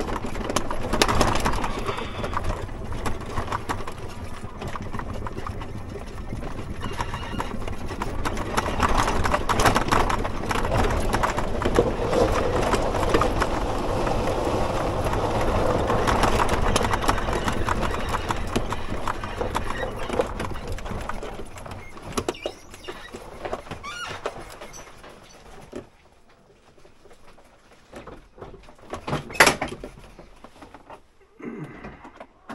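Side-by-side utility vehicle driving over rough ground, with continuous rattling and clattering from its frame and load. The noise dies away about three-quarters of the way through as the vehicle comes to a stop, and a short sharp clatter comes near the end.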